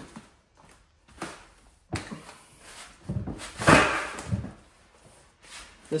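Handling noises: clothing and gear scuffing and knocking, with a sharp click about two seconds in and a louder scuffing burst around three to four seconds in.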